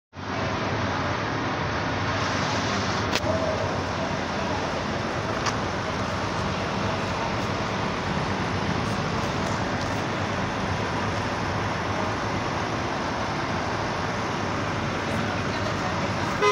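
Steady running noise of an idling motor coach parked at the curb, mixed with passing street traffic, with two brief clicks early on.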